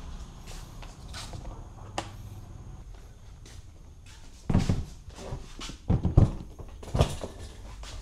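Light clicks, then a few short, loud knocks in the second half over a low hum: a plastic Givi top box being handled and knocked on its freshly fitted mounting plate.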